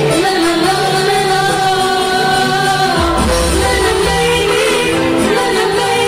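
Live modern gambus music in a disco remix style, played loud through a sound system, with a sung melody over a steady band. A deep bass swell comes in about halfway through.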